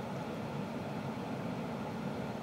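Steady low hum inside the cabin of a 2007 Ford Expedition with its 5.4-litre V8 idling, even throughout with no distinct events.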